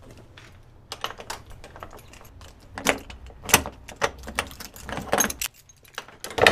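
Metal clicks and rattles of a door latch and lock being worked by hand: small clicks start about a second in, with several louder clacks in the second half.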